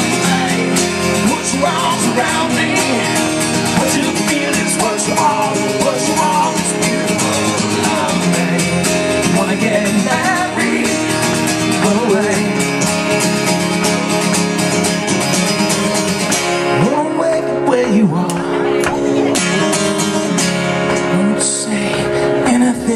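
Two acoustic guitars strummed in a live duo, with a singing voice over the chords. The strumming lets up for a couple of seconds late on, then comes back.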